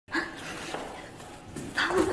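A young woman's short, loud yelp right at the start, followed by quieter room sound, then her voice starting to speak near the end.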